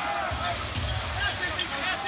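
A basketball being dribbled on a hardwood court over the steady crowd noise of a packed arena.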